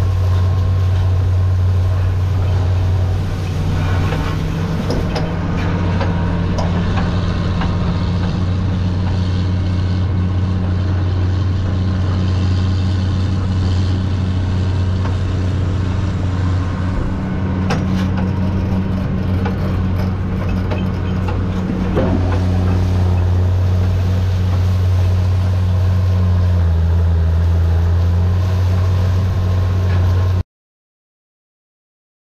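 Steady low drone of a John Deere 9300 four-wheel-drive tractor's diesel engine pulling a deep ripper under load, over the noise of the ripper shank tearing through soil and corn-stalk residue. A few sharp knocks, about a third of the way in and twice past the middle, come from clods and stalks striking the implement.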